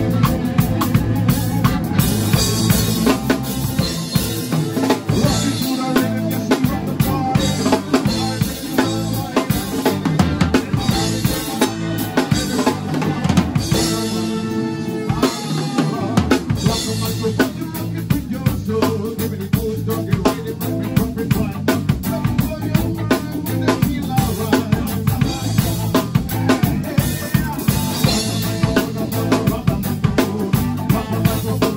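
A drum kit played close up in a live ska band, the drums loudest over the rest of the band in a steady, driving beat. About halfway the low end drops out for a moment before the full band comes back in.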